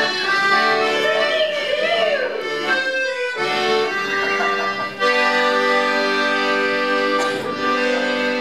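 Piano accordion playing a tune in sustained chords, with a brief break about three seconds in and a new chord starting about five seconds in.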